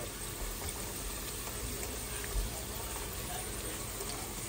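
Mackerel fish cakes shallow-frying in a pan of oil, a steady sizzle.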